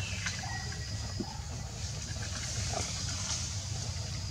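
Outdoor background ambience: a steady low rumble under a steady high hiss, with a few faint clicks.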